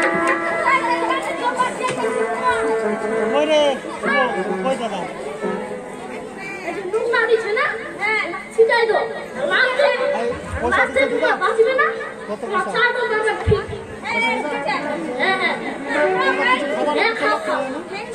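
Overlapping voices and audience chatter, with held musical notes sounding faintly underneath.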